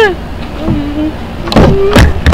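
A person's voice making wordless 'un' vocalizations: a low held hum in the first half, then a louder 'un' near the end.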